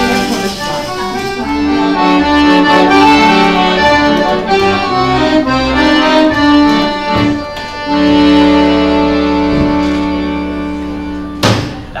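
Accordion playing a slow tune of held chords over bass notes. A sharp accented hit ends the piece near the end.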